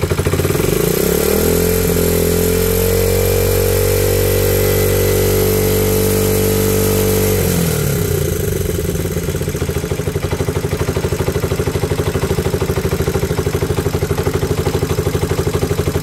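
Motorcycle engine idling, then revved up over a couple of seconds and held at a steady higher speed for about five seconds before dropping back to idle. The revving is a charging-system check: the battery voltage climbs with engine speed.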